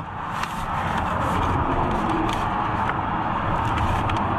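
Steady rushing noise of road traffic going past the stopped car. It swells over the first half second and then holds level, with a few faint paper rustles.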